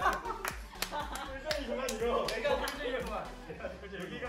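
Scattered hand claps and voices over background music with a steady beat.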